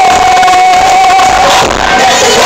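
Loud live pop music with a singer holding one long note through most of the stretch, and a crowd cheering along.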